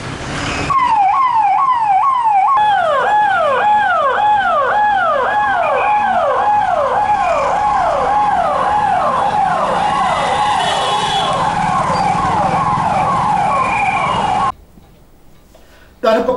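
Electronic siren sounding a rapid, repeated falling sweep, nearly two a second, with a second siren tone overlapping from a couple of seconds in. It cuts off suddenly near the end.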